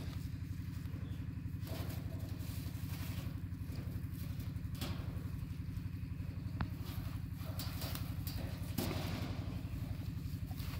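Bear humming steadily, a low purr-like drone pulsing rapidly and evenly, the sound bears make while sucking their paws. A few faint clicks sound over it.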